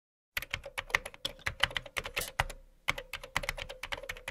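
Typing on a computer keyboard: a quick, uneven run of key clicks that starts a moment in, breaks off briefly about two and a half seconds in, then carries on.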